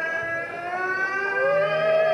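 A live band playing a held, gliding lead melody, with a smooth slide up in pitch about one and a half seconds in.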